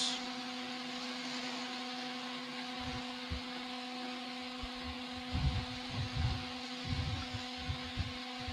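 Steady low hum with a faint hiss during a silent meditation pause, with a few soft low thumps in the second half.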